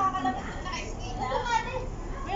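Background chatter: several women's voices talking at once, with no words clear enough to pick out.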